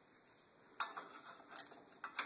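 Metal brake pads clicking against an ATV's brake caliper as they are fitted into it by hand: one sharp click a little under a second in, then a few lighter clicks.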